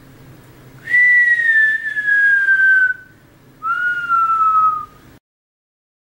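A person whistling two long notes, each sliding slowly down in pitch, the second shorter and lower than the first. The sound then cuts out to dead silence.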